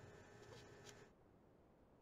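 Near silence: faint room tone that cuts to dead silence about a second in.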